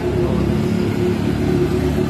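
Steady low mechanical rumble with a constant hum, no single event standing out.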